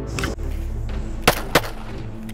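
Two pistol shots in quick succession, about a quarter second apart, a double tap from a semi-automatic handgun, over background music.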